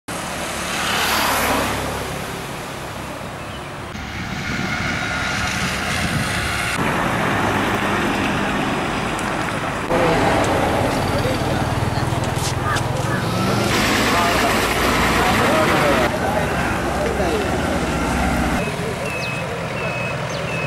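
Roadside ambient sound in short edited pieces: road traffic running by with people's voices in the background. It changes abruptly every few seconds.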